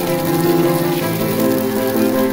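Moong dal dosa (pesarattu) sizzling in oil on a hot cast-iron tawa, a steady crackle, with background music of held notes playing along.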